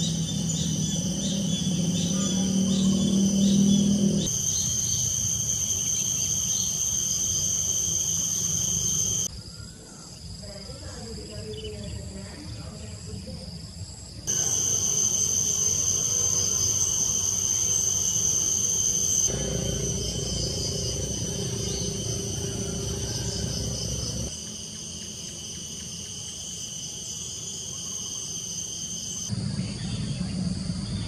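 Insects chirring in a steady, high-pitched chorus with a fast pulsing trill, over a low hum in some stretches. The sound changes abruptly about every five seconds and is quieter for a few seconds in the middle.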